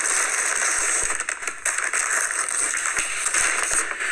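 Paper bag rustling and crinkling as it is opened and handled.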